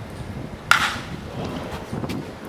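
Wooden baseball bat hitting a pitched ball: one sharp crack about two-thirds of a second in, with a short ring after it.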